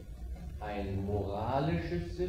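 A man's voice holding one long, slowly wavering hesitation sound, an "ehh", beginning about half a second in.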